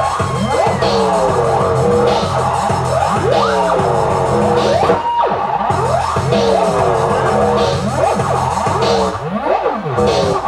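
Loud electronic dance music over a sound system, with turntable scratching: rapid rising and falling pitch sweeps laid over a steady bass beat.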